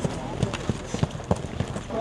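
Footsteps of several people walking on a paved sidewalk, a steady run of knocks about three a second.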